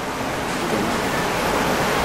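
Steady broad hiss of background room noise, with no distinct event, growing slightly louder.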